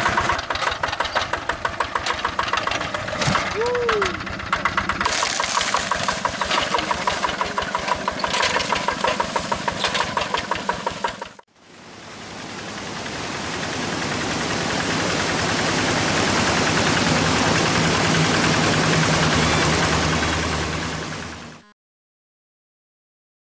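Single-cylinder diesel engine of a walk-behind paddy tractor running with a rapid, even chug. About halfway it cuts off abruptly, and a steady rushing noise of a waterfall fades in, then fades out again near the end.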